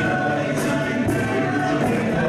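A murga chorus of many men and women singing together into stage microphones, with a regular beat about twice a second under the voices.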